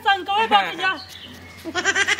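Men laughing, in wavering voiced bursts during the first second and again starting just before the end.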